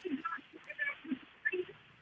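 An open telephone call-in line, faint and breaking up: only short scattered fragments of the caller's voice come through, with phone-line thinness, too weak to be heard properly.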